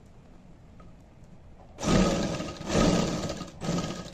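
Sewing machine stitching a zip into a garment seam, run in three short bursts of about a second each starting about two seconds in, sewing a presser-foot's width from the edge.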